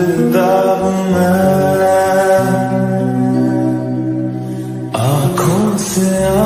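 Slow, sad Hindi song in a lofi mix: long held sung notes over sustained low accompaniment, shifting pitch a few times. A short wavering vocal phrase comes in about five seconds in.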